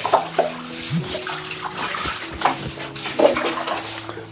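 Water splashing and sloshing in a basin as dishes are washed by hand, scooped and poured with a plastic dipper, with a few short knocks of dishes against the basin.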